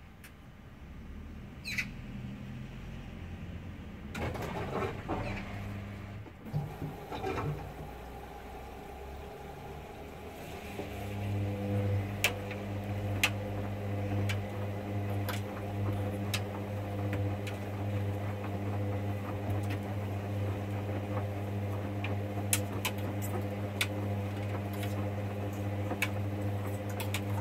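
Hoover Dynamic Next front-loading washing machine in the main wash, the drum tumbling the wet load. The motor sound shifts during the first few seconds, then settles into a steady hum about ten seconds in, with sharp clicks scattered through it.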